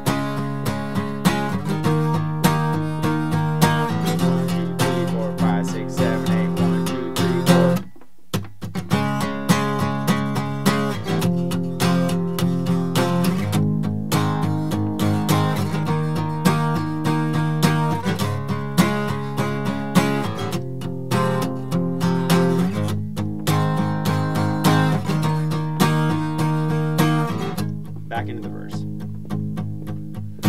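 Steel-string acoustic guitar strummed with a pick in a steady, even rhythm, playing a chord progression of the song's chorus, starting on G-sharp and later moving to F minor. The chords change every couple of seconds, with a brief break about eight seconds in.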